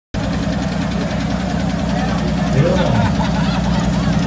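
Chevrolet Omega's 4.1-litre straight-six with compound turbochargers, idling steadily.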